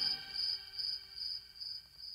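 A cricket chirping in an even rhythm, a little over two high chirps a second, growing gradually quieter.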